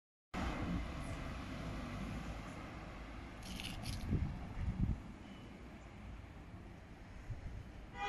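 Street traffic: a car driving off, with a steady low rumble of road noise. A short high hiss comes about three and a half seconds in, followed by a couple of low thumps.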